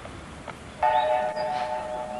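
Steam locomotive whistle: a chord of several steady tones that sounds suddenly about a second in and is held for over a second.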